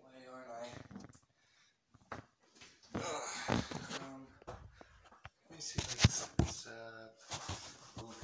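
An indistinct voice in short snatches, with scattered clicks and knocks; a sharp knock about six seconds in is the loudest sound.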